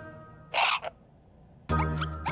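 Children's cartoon music fades out, then a short raspy cartoon sound effect about half a second in, lasting about a third of a second. After a second of near quiet the music starts again near the end.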